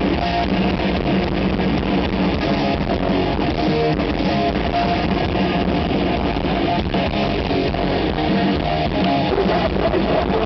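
Hardcore punk band playing live at a steady, loud level: electric guitars and a drum kit, heard from within the audience.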